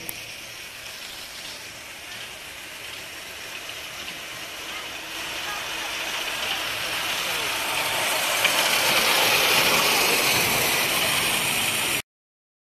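Miniature railway train running along the track toward and past the listener, its running noise growing steadily louder from about four seconds in and loudest near the end.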